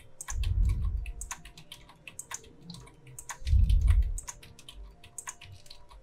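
Computer keyboard and mouse clicking: a string of quick, separate clicks as keys and mouse buttons are pressed. Twice, a low muffled rumble about a second long, louder than the clicks.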